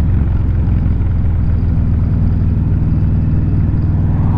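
Kawasaki VN1600 Mean Streak's V-twin engine running at a steady cruising speed under way, a low even drone that holds the same pitch throughout.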